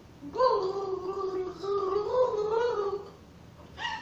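A woman gargling water while humming a tune through it: a gurgling, wavering melody that lasts about three seconds and stops, followed by a short vocal sound near the end.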